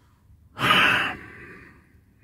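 A man's sigh: one breathy exhale about half a second in, strongest for about half a second and then trailing off.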